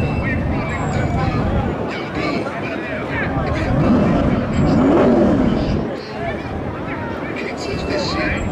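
Drag-race car engines running at the starting line with crowd chatter over them; one engine revs up and back down about four to five seconds in.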